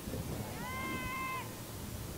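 A single high-pitched call from a voice shouting across the field, held for about a second, under low crowd and field noise.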